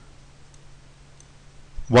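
A few faint computer mouse clicks over a low steady hum, with a man's voice starting just before the end.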